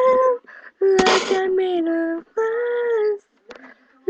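A girl singing unaccompanied: a held note ends just after the start, then two short sung phrases follow, with a short breathy hiss about a second in.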